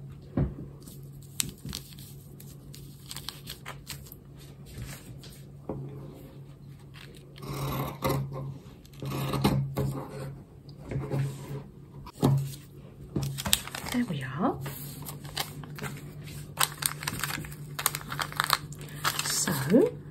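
Cotton fabric being handled, folded and rustled on a wooden table, with scissors snipping through the fabric about twelve seconds in, over a low steady hum.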